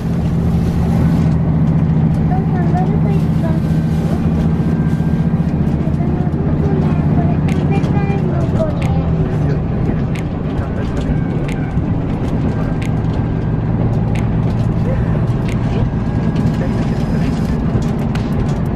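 Diesel railcar heard from inside the passenger cabin while under way: a steady engine and running drone with scattered sharp clicks and knocks from the wheels and car body.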